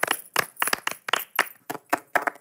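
A small group of people clapping their hands in applause: separate, sharp claps, about five a second.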